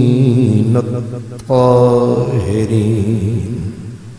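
A man's voice chanting in long, drawn-out melodic notes into a microphone. It breaks briefly for breath about one and a half seconds in, starts a fresh held note, then trails off near the end.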